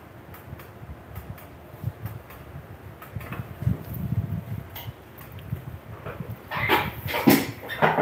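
Glass pan lid lifted off and a spatula stirring rice and broken spaghetti in a frying pan: soft scrapes and light clicks, busier near the end.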